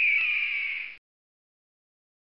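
A short outro sound effect with a downward-gliding pitch that cuts off suddenly about a second in, followed by complete silence.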